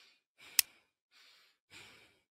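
Faint, short breaths in an otherwise quiet pause, with a single sharp click about half a second in.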